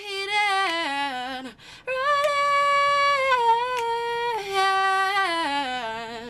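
A young woman singing unaccompanied in two long held phrases that each step down in pitch, with a short breath between them about a second and a half in.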